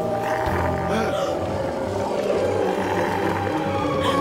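Dramatic background music with wild animals growling out of the dark.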